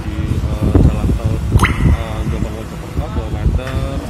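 Indistinct voices of several people talking at once, over a steady low outdoor rumble.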